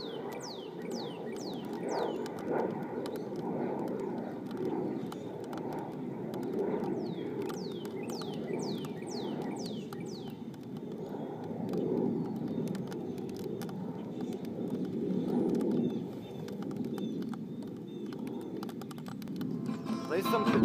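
A bird calling in runs of quick, high, falling whistles, one run at the start and another about seven to ten seconds in, over a steady low background rumble.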